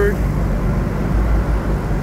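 A heavy diesel engine idling steadily, with a low, even hum.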